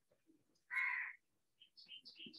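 A crow caws once, briefly, a little under a second in; near the end faint, rapid high chirps begin.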